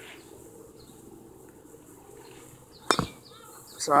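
A single sharp crack about three seconds in: a baseball bat hitting a pitched ball.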